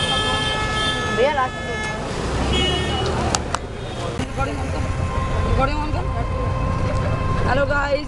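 A vehicle horn honks over street traffic noise and voices: one long honk in the first two seconds, then a short one soon after.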